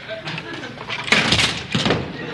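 A staged fight on a theatre stage: a sudden loud noise about a second in, as an actor goes down onto the stage floor, mixed with voices.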